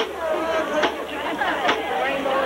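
Marching band drums striking a steady beat, a sharp hit a little under every second, over crowd chatter in the stands.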